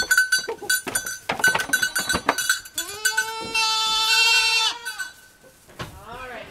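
A run of knocks and clatter as a goat's hooves leave a milking stand. Then, about three seconds in, a goat bleats once, a long drawn-out call lasting about two seconds.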